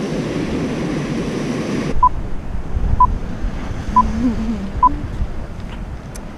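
Rushing surf and wind on the microphone, which cuts off abruptly about two seconds in. Then come four short electronic beeps about a second apart over a quieter background.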